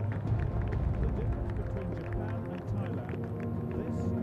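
Mostly speech: a sports commentator talking continuously, with a low steady hum underneath.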